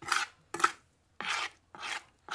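Wet fermented cow manure slurry being stirred in a drum: four short scraping strokes, about two a second.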